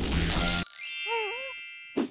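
Rock music cuts off about half a second in. A bright bell-like ding follows and rings out and fades, with a short wavering pitched tone rising and falling twice over it. These are edited-in sound effects.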